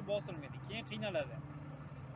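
A car engine idling with a steady low hum, heard from inside the car, under a man's talk for the first second or so.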